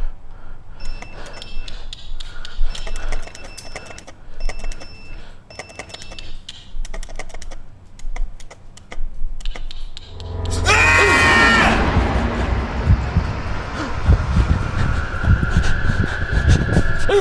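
Horror-video soundtrack: a run of soft, sharp clicks and taps with faint repeating high tones, then about ten seconds in a sudden loud jump-scare sting that stays loud, with a steady high tone near the end.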